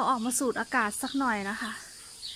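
A woman's voice speaking in a few short phrases, stopping a little before the end.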